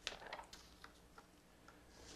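Faint rustle and a few small ticks of a sheet of paper being turned over at a lectern, in the first half-second, then near silence.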